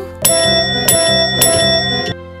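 Chrome desk service bell struck three times, a little over half a second apart, each strike ringing on into the next.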